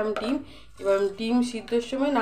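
A woman's voice talking, with a brief pause about half a second in.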